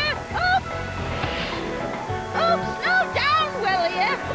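Cartoon soundtrack: background music over a steady bass line, with groups of short honking calls that bend up and down in pitch, and a brief hiss of wind about a second in.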